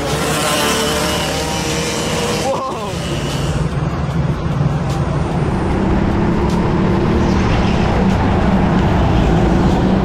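Crowd voices and noise at first, then, after a cut about three seconds in, a go-kart engine running steadily from onboard the kart as it races, growing slightly louder toward the end.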